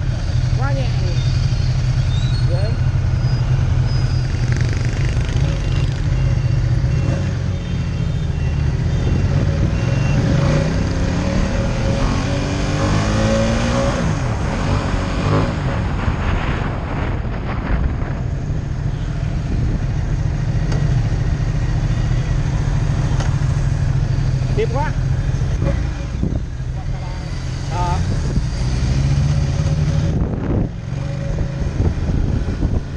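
Large motorcycle engine running while riding through city traffic, heard from on the bike with road and wind noise. Its revs climb as it accelerates about twelve to fifteen seconds in.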